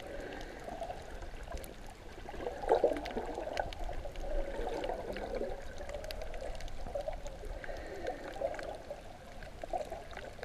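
Muffled gurgling and sloshing of water around an action camera held underwater, with brief louder surges and a few faint clicks.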